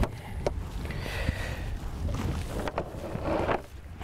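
A cast net being gathered and loaded for a throw: light rustles and a few faint clicks from the monofilament mesh and its lead line, over a steady low rumble of wind on the microphone.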